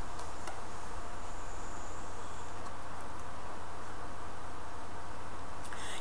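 Steady faint hiss with a low hum: room tone. A faint thin high sound comes in about a second in and fades out by two and a half seconds.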